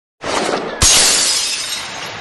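Breaking-glass sound effect: a short rush of noise, then a sharp smash just under a second in that fades slowly as the pieces ring out.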